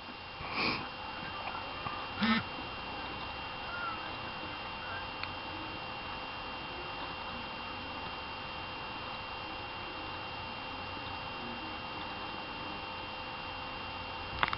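Steady low background hiss with faint steady electronic whine tones, broken only by two brief faint noises in the first few seconds.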